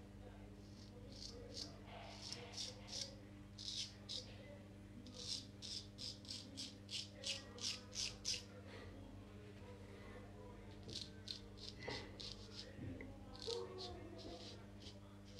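Friodur straight razor scraping through lathered stubble in short strokes, coming in runs with the quickest and loudest run in the middle and a pause of about two seconds after it. A steady low hum lies underneath.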